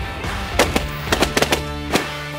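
A quick, irregular volley of about seven shotgun shots from several hunters firing at geese overhead, all in the middle of the stretch, over a background music track.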